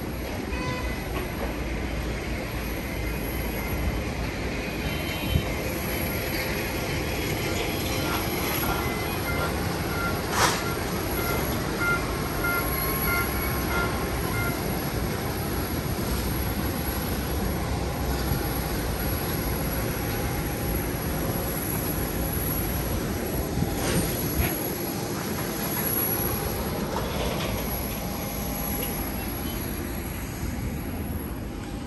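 Steady airport apron noise: the continuous hum and rumble of airliners and ground equipment at the gates, with faint intermittent beeping tones and a couple of sharp clicks.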